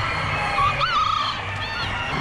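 Poultry calling in a crowded show hall: a honking call about halfway through and short high calls near the end, over a steady low hum of the hall.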